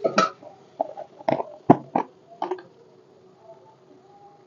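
A metal spoon knocking against a steel kadai during stir-frying: five sharp clinks in the first two and a half seconds, then quieter.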